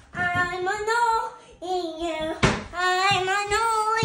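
A young child singing a wordless tune in long, wavering notes with short breaks, and a single sharp knock a little past halfway.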